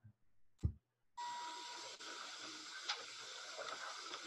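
A short click, then about a second in a played-back video's soundtrack begins: a steady hiss of recorded room noise, opening with a brief beep-like tone and with a faint tick near the end.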